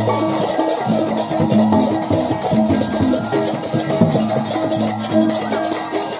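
Balinese gamelan music playing for a barong ngelawang procession: held ringing metal tones over a dense, fast run of percussion strokes.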